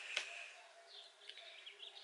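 Faint bird twittering: a quick run of short, high chirps starting about a second in, with a light click near the start.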